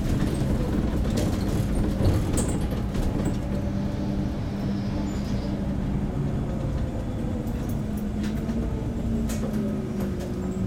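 MAN Lion's City CNG city bus running as it drives, heard from inside near the driver: a steady low engine hum, with a whine that drops in pitch near the end and occasional light rattles and clicks.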